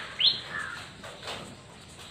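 A bird chirping: two short, sharply rising notes close together right at the start, then faint background.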